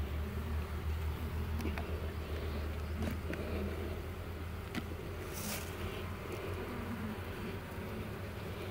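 Honeybee colony buzzing steadily from an open hive box, with a few faint clicks.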